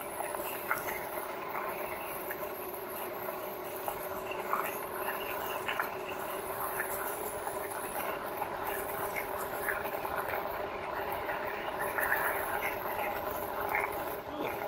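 A 2018 RadMini fat-tire e-bike riding on a dirt and gravel trail under pedal assist. The hub motor gives a steady hum, while the tyres crunch over the gravel and the bike makes small scattered rattles and ticks.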